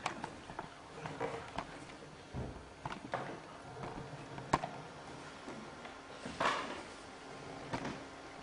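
Handling noise as equipment is moved about: scattered clicks and knocks, a sharper knock about halfway through and a brief scraping swish a little later.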